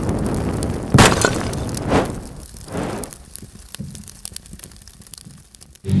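Cinematic logo-intro sound effects: a noisy whoosh building to a sharp impact hit about a second in, a second hit about a second later, then fading hits with crackling sparks.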